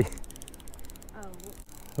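Spinning reel clicking quietly as it is cranked against a hooked, fighting trout.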